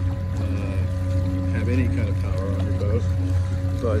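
Bixby electric motor drive pushing a Hobie pedal kayak along at cruising speed: a steady low hum with thin, steady higher whines above it.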